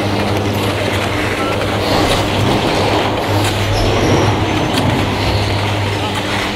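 Machinery of a detachable high-speed chairlift terminal running: a steady mechanical hum and rumble as the chair passes through the station, with a rattle like rolling train wheels.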